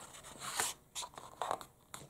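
Paper page of a paperback picture book rustling under the reader's fingers as the page is lifted and handled, in several short rustles.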